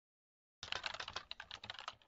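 Rapid computer-keyboard typing clicks, about ten a second, beginning abruptly about half a second in: a typing sound effect laid over the on-screen title.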